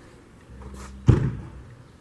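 A single loud thump about a second in that dies away quickly, over a low steady hum.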